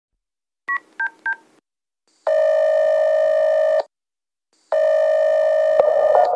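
Touch-tone phone keypad beeps dialing 9-1-1, three short two-note tones, followed by two long steady ringing tones of the call ringing out, all pitched up from being sped up. Music comes in near the end.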